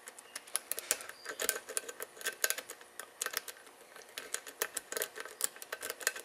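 A steel lock pick rocked up and down in a multi-shearline lock's paracentric keyway, scraping and clicking against the pin tumblers under light tension: a run of irregular light clicks and ticks, several a second.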